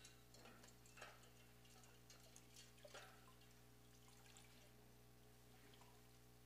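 Near silence over a steady electrical hum, with a few faint drips and small splashes of water in the first three seconds as washcloth mittens are dipped and wrung out in a metal pot of water.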